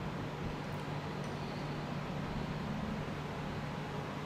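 Steady room tone with a low constant hum and faint background hiss, with no distinct events.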